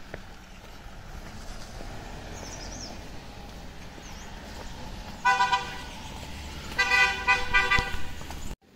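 Vehicle horn honking: one short blast about five seconds in, then a quick run of several honks near the end, over a steady low street background.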